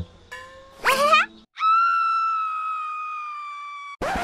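A leaf blown like a whistle: a short wavering squeak that slides upward, then a long reedy note that slowly sags in pitch and fades before stopping abruptly.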